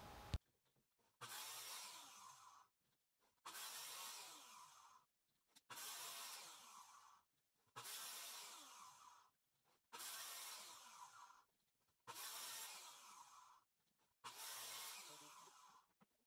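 Very faint circular saw cutting kerfs into a luan plywood sheet, heard as seven short passes about two seconds apart, each starting abruptly and fading with a falling pitch, with dead silence between them.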